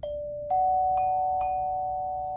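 Alto glockenspiel's metal bars struck with rubber-headed mallets: about four notes half a second apart, rising in pitch, each left ringing so the tones overlap.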